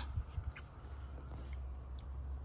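Quiet room tone with a steady low hum and a few soft clicks in the first half-second.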